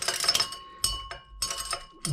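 Zinc granules clinking irregularly against the glass beaker as a magnetic stirrer swirls them through a watery silver chloride slurry, over a faint steady high tone.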